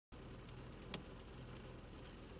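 Quiet car-cabin background: a faint steady low hum, with a single short click about a second in.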